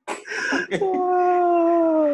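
A voice holding one long, howl-like note that slides slowly down in pitch, starting just under a second in after a brief breathy burst.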